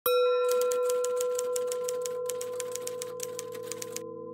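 Intro sound effect: a ringing tone that starts suddenly and slowly fades, with an even run of sharp typewriter-like ticks, about seven a second, that stops shortly before the end.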